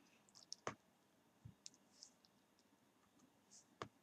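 Near silence broken by a few faint computer mouse clicks, one clear click a little under a second in and another just before the end.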